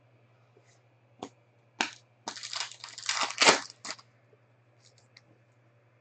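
Two light clicks, then about two seconds of crinkling plastic as trading cards and their clear plastic sleeves are handled, loudest about three and a half seconds in.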